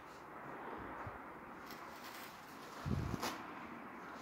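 Quiet room with a few faint clicks and a dull low thump about three seconds in, followed at once by a sharp click: objects being handled and set down.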